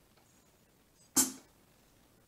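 A single drum-kit sample struck on a Yamaha PSR-S910 keyboard's break kit, one sharp hit about a second in that dies away within half a second.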